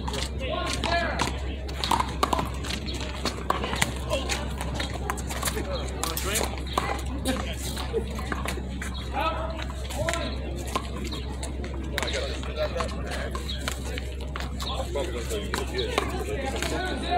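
Background talk of several people, with several sharp slaps of a handball hit by gloved hands and off a concrete wall, most in the first few seconds, over a steady low hum.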